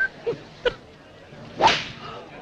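A golf club swishing through a tee shot and striking the ball, a quick rising whoosh near the end, after a short sharp click earlier on.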